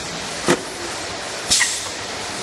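Automatic measuring-cup cup filling and sealing machine running with a steady mechanical noise, punctuated by a short knock about half a second in and a sharp clack with a brief hiss of air about a second and a half in, as the machine cycles.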